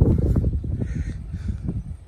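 Low rumbling noise outdoors, loudest at the start and fading over the two seconds, with a faint bird call about halfway through.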